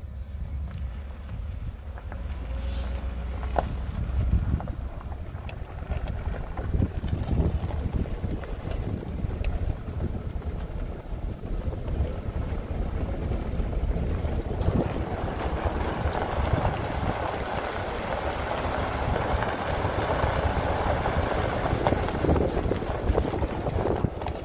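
Wind rumbling and buffeting on the microphone. About halfway through, a rushing hiss grows louder and fuller.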